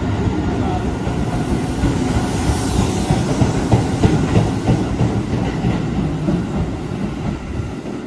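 Keisei 3600 series electric train pulling out and rolling past the platform, its wheels clacking over the rail joints as the cars go by. The sound tapers off near the end as the last car passes.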